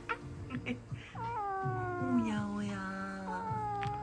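Calico cat meowing in long, drawn-out calls that begin about a second in and slide slowly down in pitch.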